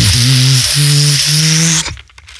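Beatboxer producing a loud, continuous hiss with three short hummed low notes under it, as a bass line, into a studio microphone. The whole sound cuts off suddenly just before the end.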